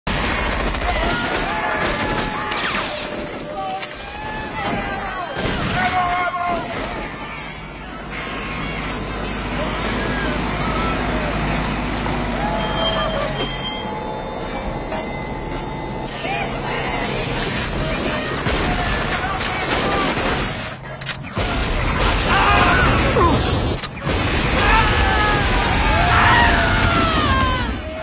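Action-film battle soundtrack: volleys of gunfire and explosions mixed with people shouting, over a music score, growing louder in the last few seconds.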